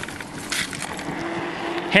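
Riding noise of the Asomtom RV3 e-bike on throttle coming off rough ground onto the road: steady wind and tyre rush, with a brief rattle about half a second in and a faint steady whine from its 350-watt rear hub motor in the second half.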